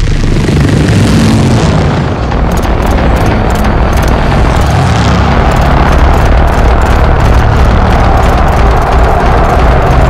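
Film sound mix: the deep, steady rumble of a large hovering aircraft's engines, loud throughout, mixed with music.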